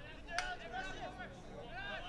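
Players shouting across an outdoor soccer field, their calls distant and unintelligible, with one sharp knock about half a second in.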